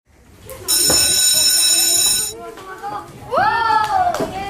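An electric school bell rings loudly for about a second and a half, starting just under a second in, over the chatter of children in a classroom. Near the end a voice calls out.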